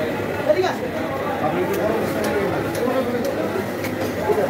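Background chatter of several people talking at once, with a few faint clicks scattered through it.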